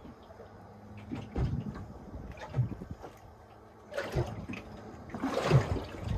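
Small waves lapping and splashing against the hull of a small boat, in irregular slaps with a louder rush of water about five seconds in.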